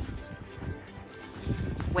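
Soft background music over light handling noise as two Samoyeds are unclipped from their leash: a few small clicks and soft thumps of the dogs moving in the snow.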